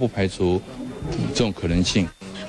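A man speaking in an interview; only speech is heard.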